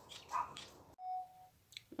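Faint indistinct sounds, then a single short steady beep lasting about half a second, starting just after a second in.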